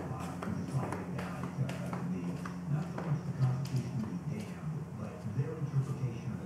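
AM radio tuned to a talk station, playing faint, indistinct speech over a steady low hum with scattered clicks.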